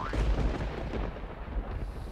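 A deep, rumbling boom sound effect that hits suddenly and slowly dies away.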